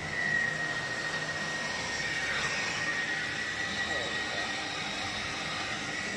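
Hard-hood bonnet hair dryer running: a steady fan rush with a thin, steady high whine.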